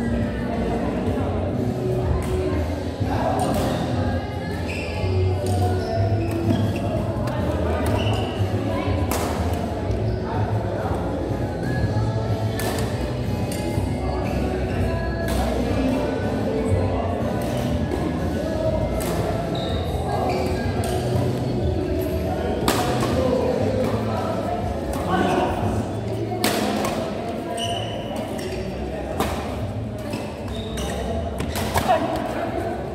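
Badminton doubles play: repeated sharp racket strikes on a shuttlecock and thuds of feet on the court mat, over background music and voices in the hall.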